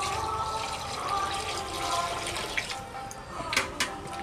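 Water poured from a small steel pot into a steel bowl of raw mutton pieces, running and splashing as the meat is washed, with a few sharp splashes near the end as a hand works the meat in the water.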